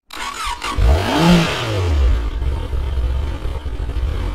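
An engine revs once, its pitch rising and falling about a second in, then drops and settles to a steady low idle.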